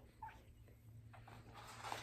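Near silence, broken by a dog's faint short whimper about a quarter second in. Soft paper rustling builds near the end as a picture-book page is turned.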